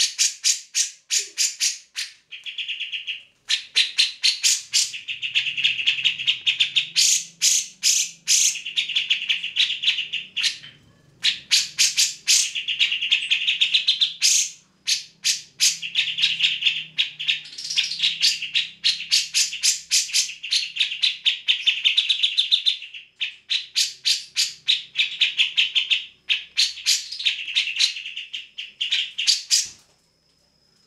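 Cucak jenggot (grey-cheeked bulbul) in full song: long, rapid runs of sharp, chattering notes, broken by a few short pauses.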